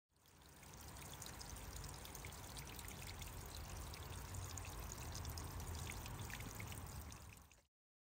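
A small trickle of water spilling off a rock ledge and splashing onto wet rock below, a faint steady patter. It fades in at the start and fades out near the end.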